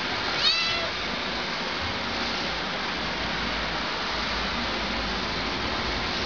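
A domestic shorthair cat gives one short, high meow about half a second in, over a steady background hiss.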